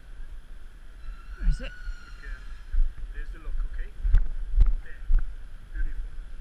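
Footsteps on brick paving, sharper and about two a second in the second half, over a low rumble of movement on a body-worn microphone, with a faint voice from the street about a second and a half in.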